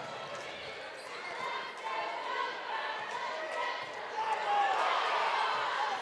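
A basketball being dribbled on a hardwood gym floor, with the chatter and calls of a gymnasium crowd around it, growing slightly louder in the second half.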